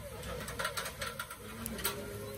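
Tiger prawns sizzling on a grate over hot charcoal, with a quick run of sharp crackles and pops from about half a second in.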